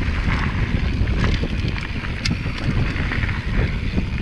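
Mountain bike riding fast down a dry dirt singletrack: wind buffeting the camera microphone over the crunch of tyres on loose dirt and small stones, with scattered clicks and rattles from the bike. One sharper click comes a little past the middle.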